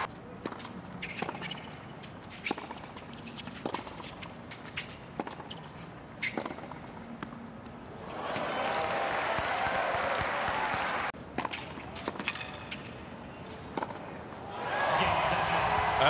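Tennis rally on a hard court: the ball is struck by rackets and bounces, sharp knocks every second or so. The crowd applauds and cheers when the point ends, about eight seconds in. After a break, another short exchange of strokes is followed by crowd applause rising near the end.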